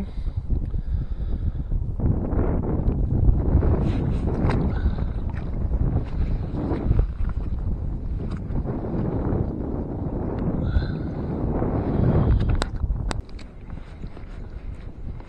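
Wind buffeting the microphone as a loud, uneven rumble, with scattered knocks and clicks from handling fishing gear on a kayak. The rumble drops off about a second before the end.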